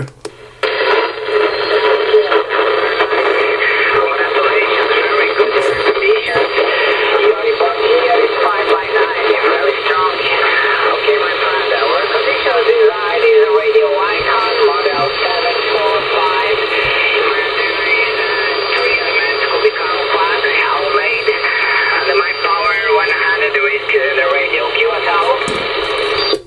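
A distant station's voice coming over a shortwave radio receiver. The speech sounds thin and boxy, cut off at top and bottom by the narrow radio band, with steady whistling tones and a low hum under it.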